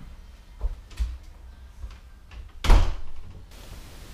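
A house's front door is pushed shut with one loud thud about two and a half seconds in. A few soft knocks come before it.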